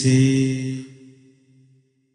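A man's voice chanting a Sinhala metta (loving-kindness) meditation verse, holding its last note, which fades away within about a second and a half.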